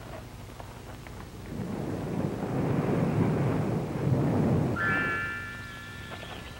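Low rumble of thunder that swells for a few seconds and dies away. Near the end a sustained high chord of several steady notes comes in.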